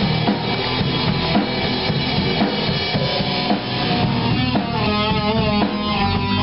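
A grunge-punk band playing loudly: a drum kit with bass drum and snare driving a steady beat, with electric guitar over it and a wavering melody line coming in over the last second or so.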